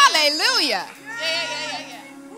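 A high-pitched human voice calling out in long, swooping, wavering tones without clear words, loudest at the start and trailing off toward the end.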